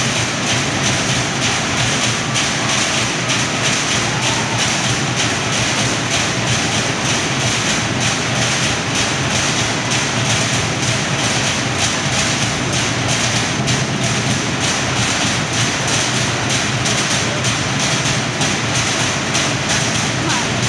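Fast, steady drumming on Samoan wooden log drums, a continuous driving beat of rapid strikes that does not let up, the accompaniment to a fire knife dance.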